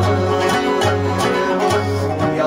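Rubab plucked in a steady rhythmic pattern, with a daf frame drum beating in time: the instrumental accompaniment of a Burushaski devotional ginan.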